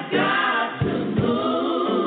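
Gospel choir singing, with several voices holding and gliding between long notes.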